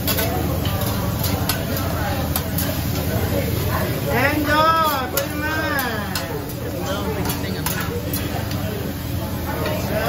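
Hibachi chef's metal spatulas clicking and scraping on a steel teppanyaki griddle over a steady sizzle of cooking food. A voice is heard briefly about four seconds in.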